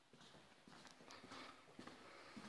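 Faint footsteps on a hard floor: a few soft, uneven steps against near silence.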